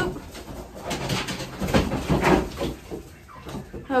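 Backyard chickens making low, soft clucking calls, several short calls in an irregular series.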